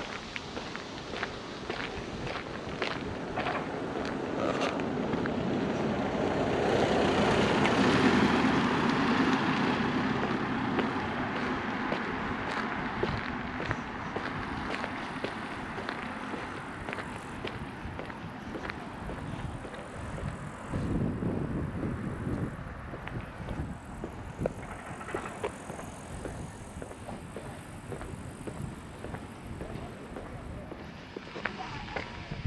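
A vehicle passing on the road, its tyre and engine noise swelling to its loudest about eight seconds in and then fading away, over footsteps on asphalt.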